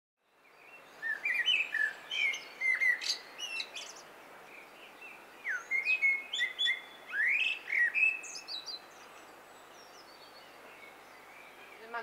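Songbirds singing, a run of quick chirps and whistled notes that sweep up and down, in two spells of song, then fading to a faint steady outdoor hiss for the last few seconds.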